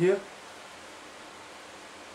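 A man's voice finishing a word at the start, then a steady, even hiss of room tone.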